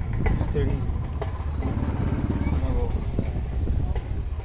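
Steady low rumble from inside a moving cable-car gondola, with a few short clicks and faint voices in the background.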